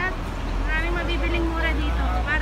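Busy street-market ambience: people talking nearby over a steady low rumble.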